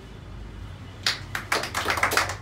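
A small group of spectators clapping by hand, starting about a second in with sharp, uneven claps, in applause for a carrom shot.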